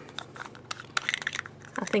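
Quick, irregular run of small clicks and taps from a plastic cream-eyeshadow pot being handled.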